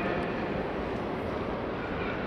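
Steady, even background noise of a large open-air stadium with a seated crowd, a low rumble with no distinct events.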